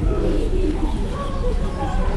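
Soft, indistinct voices: murmured speech and wavering vocal sounds as the microphone changes hands.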